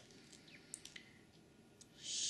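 Near silence with a few faint, scattered clicks.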